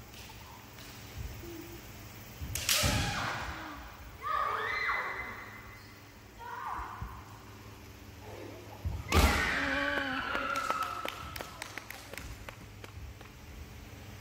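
Kendo bout: fencers shouting kiai, with sharp strikes of bamboo shinai and stamping feet on a wooden floor in a large hall. The loudest strike comes about nine seconds in, followed by a long shout and a quick run of clacks.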